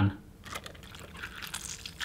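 Soft, soaked gelatine sheets being handled: one laid into an empty saucepan and the next lifted and wrung out over a bowl of water, giving faint crinkling and small scattered clicks.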